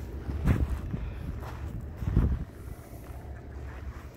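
Wind buffeting the microphone as a low rumble, with two stronger gusts about half a second and two seconds in, then easing.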